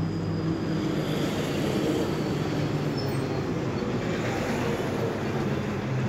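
Steady mechanical background rumble with a low, even hum, unchanging throughout.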